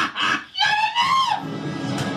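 Music from a cartoon soundtrack, with a high, wavering voice cry lasting most of a second near the middle.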